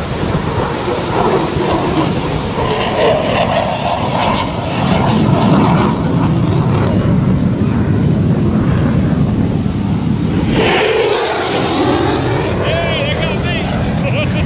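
Fighter jet flying past overhead at an air show, a loud steady jet rumble, with wind on the microphone and voices of people nearby mixed in.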